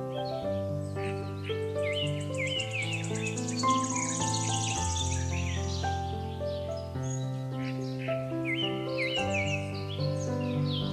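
Piano music with birdsong mixed over it: frequent short bird chirps and whistles, and a fast high trill from about one and a half to five seconds in.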